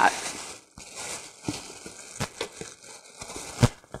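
Plastic packaging bag crinkling and cardboard box flaps rustling as foam packing is lifted out of a shipping box, with scattered light knocks and one louder knock near the end.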